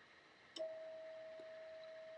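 A transceiver's CW sidetone: a faint click about half a second in, then one steady tone held on. The radio is keyed down, sending a carrier of about 3 watts into a dummy load through the power meter.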